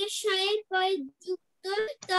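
A young child's voice chanting words in a sing-song, one syllable at a time, with short pauses between them.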